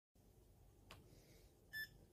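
PAX S80 card payment terminal giving one short electronic beep near the end as it powers on and its screen lights up, after a faint click about a second in.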